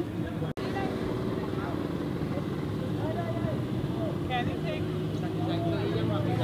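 A steady, engine-like hum under scattered voices of people, with a brief dropout about half a second in.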